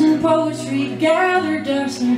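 A woman singing a slow folk song live, accompanying herself on an acoustic guitar.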